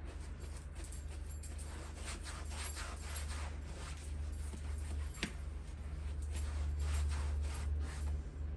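A paintbrush scrubbing a runny chalk-paint mixture into upholstery fabric in a run of short, brushy strokes, over a steady low hum. There is a sharp tap about five seconds in.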